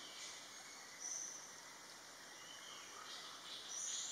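Faint forest background noise, a steady low hiss, with short high, thin calls about a second in and again near the end.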